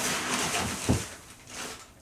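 Rustling and clattering of someone rummaging through a garbage can, with one dull thump about a second in, dying away toward the end.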